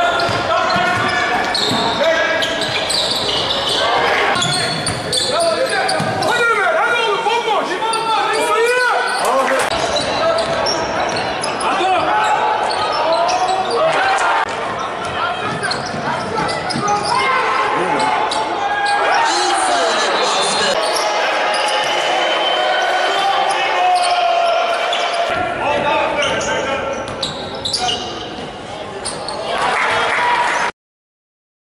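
Live game sound of basketball in a large indoor arena: the ball bouncing on the hardwood, with voices from players and spectators. Several game clips are cut together, so the sound changes abruptly a few times.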